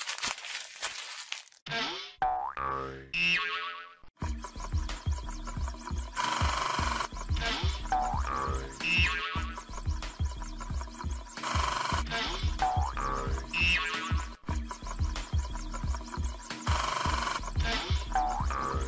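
Background music for a children's cartoon, with springy boing sound effects. A sudden hit and quick rising glides fill the first few seconds. From about four seconds in a steady bouncy beat runs, with a rising boing returning every five seconds or so.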